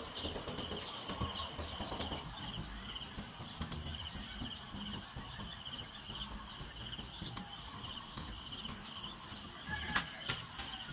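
Insects chirping outdoors, short trilled chirps repeating at about two a second over a low background hiss.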